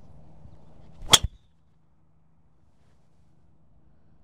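Golf driver striking a ball off the tee: a single sharp, high crack about a second in.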